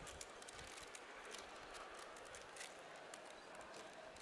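Faint crinkling of baking paper with many small, irregular clicks as hands press and crimp the edge of empanada dough on a paper-lined baking tray.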